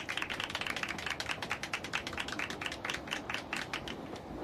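A small group of people applauding: quick, overlapping handclaps.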